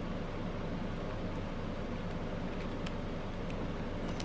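Steady hiss with a low hum underneath, and a few faint small clicks in the second half.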